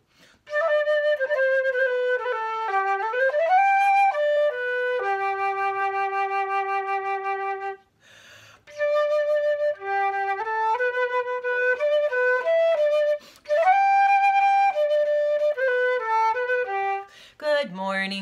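Silver flute playing a melody in three phrases, the first ending on a low note held for about three seconds, with a breath taken about eight seconds in.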